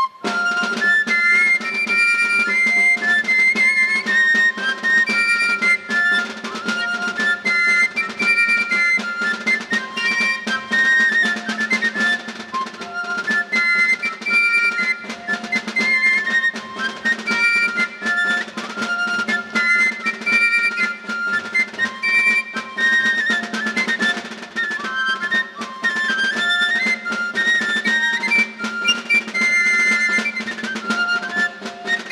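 Basque folk dance tune played on txistu (three-hole pipe), a lively high melody over a held low note, with drum strokes keeping the beat.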